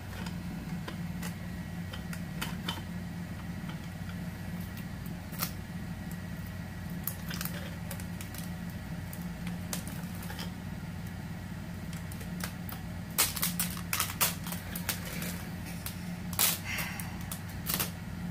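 Clear packing tape being handled and pulled from its roll: scattered sharp clicks and crackles, with a burst of them about three-quarters of the way through and another near the end, over a steady low hum.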